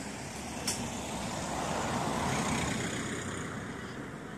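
A road vehicle passing by, its noise swelling to a peak about two seconds in and then fading, over steady outdoor traffic noise. A short sharp click just under a second in.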